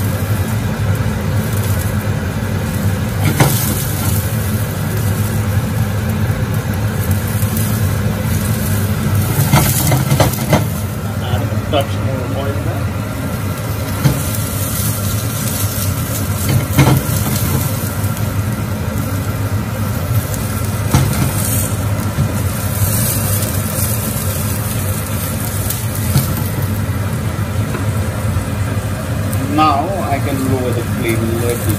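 Button mushrooms sizzling in olive oil in a hot nonstick frying pan over a gas burner, over a steady low hum. Now and then the spatula or the pan gives a sharp knock, about six or seven times.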